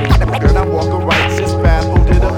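Instrumental break of a hip hop track: a steady drum beat with turntable scratching over it.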